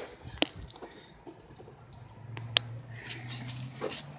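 Two sharp clicks about two seconds apart over a quiet background, with a faint steady low hum coming in about halfway through.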